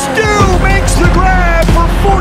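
Loud music, with a deep steady bass that comes in about half a second in.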